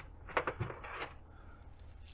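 A few faint, short clicks and taps over a low steady hum.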